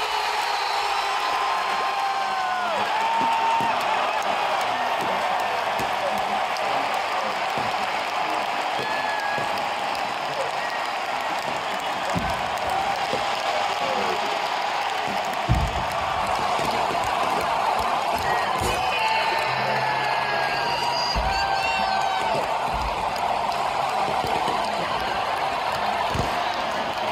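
Large baseball crowd cheering, shouting and whooping without a break, with a handful of deep firework booms from about halfway on, the loudest about 15 s in.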